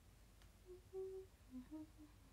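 A young woman humming softly with her mouth closed: a few short notes that step up and down in pitch, the longest about a second in.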